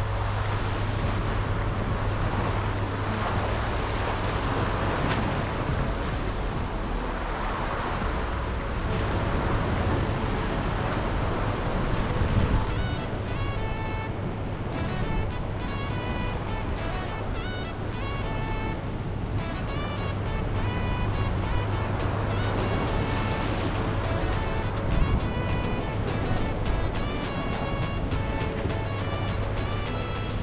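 Wind buffeting the microphone over the wash of the sea against rocks, a steady rushing noise with a low rumble. About twelve seconds in, background music with short repeated notes comes in and continues over it.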